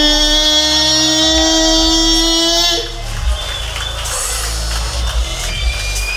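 Beatboxer's voice through a stage microphone and PA holding one long, steady buzzing note over a low bass. The note cuts off about three seconds in, leaving quieter mixed stage sound.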